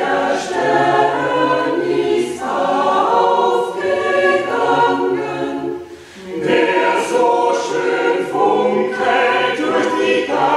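Mixed choir of men's and women's voices singing in held chords, with a short break between phrases about six seconds in before the next phrase begins.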